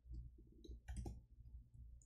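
Faint computer keyboard typing: a few quick key clicks, bunched about a second in, over a low steady hum.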